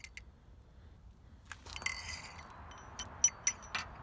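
Metal hand tools clinking as a socket and ratchet are handled: several sharp, irregular clinks with a brief high ring in the second half, over soft handling noise.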